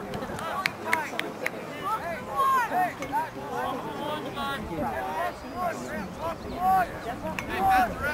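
Distant, indistinct shouting from lacrosse players and spectators across the field, with a few sharp clacks about a second in.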